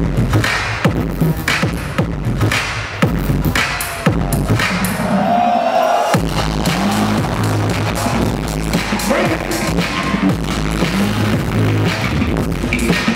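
Loud dance-battle music with a heavy, steady beat. The bass drops out for about two seconds around four seconds in, then comes back strongly.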